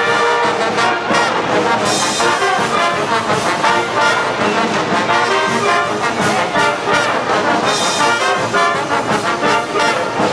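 A college marching band's brass section, trumpets and mellophones, playing a tune in continuous, loud ensemble.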